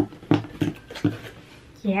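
A woman's voice making a few short sounds without clear words in the first second, then quieter.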